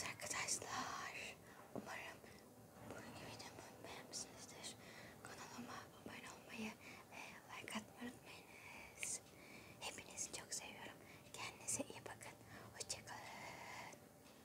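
A woman whispering close to the microphone, with crisp s-sounds.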